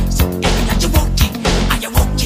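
Recorded music with a steady drum beat and strong bass.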